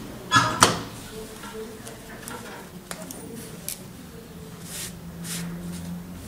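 Satin dress fabric rustling and being handled at a Typical industrial sewing machine, with two louder rustles about half a second in and softer ones after. A steady low hum from the machine's running motor sits underneath and grows a little stronger in the second half.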